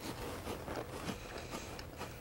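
Faint crunching of a cracker being chewed, small scattered crunches over quiet studio room tone.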